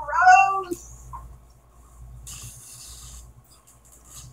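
A domestic cat meows once, a short call that rises and falls in pitch, in the first second.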